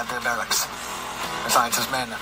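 Quieter speech with background music underneath, the narration of a documentary playing on a phone.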